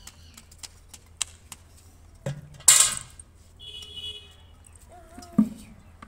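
Empty plastic bucket being handled by its wire handle: small clinks and rattles from the handle, two low knocks of the bucket against the ground, and a loud scraping rush about halfway through.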